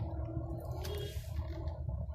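Steady low rumble of a car's engine and road noise heard from inside the cabin while it creeps forward in city traffic.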